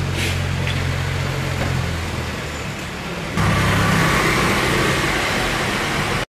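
Street traffic with a motor vehicle engine running steadily. About three and a half seconds in it suddenly gets louder as a motorcycle rides along the cobbled street.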